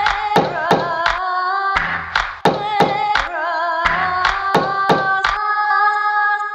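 Sample-based remix music: chopped, held sung notes from a female voice with vibrato, layered into a chord over a drum beat of sharp hits with deep kicks about three times a second. Near the end the drums stop and the sung note is held on its own.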